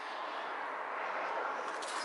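A steady rushing noise of road traffic passing outside, swelling slightly toward the middle and easing again.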